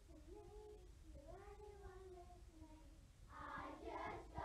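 A class of young children singing very softly, long held notes that slide gently in pitch, with the singing growing louder and fuller near the end.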